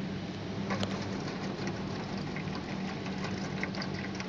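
A tabby cat crunching dry cat food, a run of small irregular crunches, over a steady low hum.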